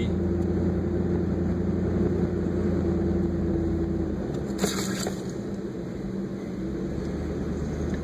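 Vehicle engine running steadily, heard from inside the cab while driving slowly on a sandy trail. The engine note eases off about four seconds in, and a brief noise comes about halfway through.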